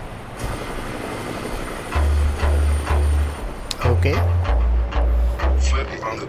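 Hip-hop track from a music video. Its deep bass notes come in about two seconds in and pulse about twice a second, over a quieter opening of background sound.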